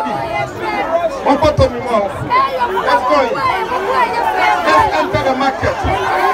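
Speech and crowd chatter: several voices talking at once, with a man speaking into a handheld microphone among them.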